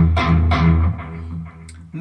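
Electric guitar playing three palm-muted chugs on the open low E string in the first second, the sound then fading.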